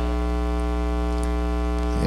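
Steady electrical mains hum in the microphone and recording chain: a fairly loud, unchanging buzzing drone with a stack of evenly spaced overtones.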